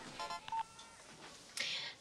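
A mobile phone's melodic ringtone plays a few short electronic notes and stops within the first second as the call is answered. A brief soft noise follows near the end.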